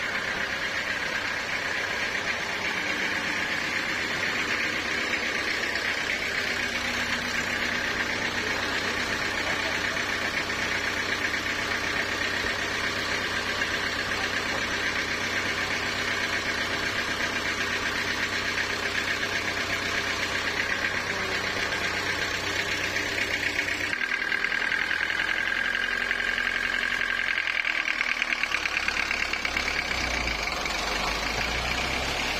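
Diesel engine driving a homemade sawmill, running steadily with a steady high whine over its low hum. About 24 seconds in, the engine note changes.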